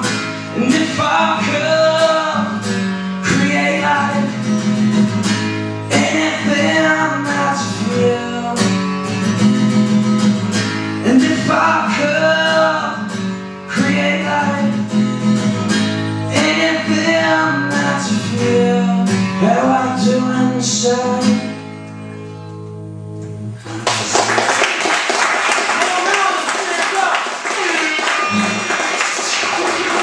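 Male voice singing over a strummed acoustic guitar in a steady rhythm. About twenty seconds in the song ends and the last chord rings out briefly, then the audience applauds.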